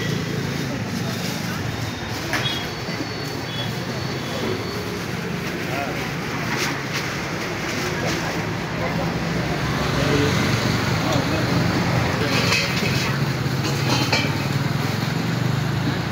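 Roadside street ambience: a steady traffic hum with indistinct background voices and a few brief clicks.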